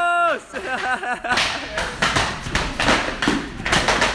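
Jiu-jitsu belts lashing against a newly promoted brown belt's gi as he runs a promotion gauntlet: a rapid, irregular string of sharp smacks from about a second and a half in. Group shouting goes on throughout, and a long held shout ends just after the start.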